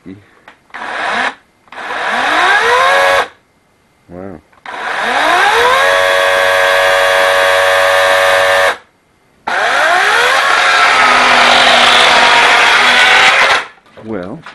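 Lynxx 40-volt brushless battery chainsaw triggered in five bursts: two short blips and three longer runs. Each run winds quickly up in pitch to a steady high whine and stops suddenly. The last run is rougher, with the chain cutting into pallet wood.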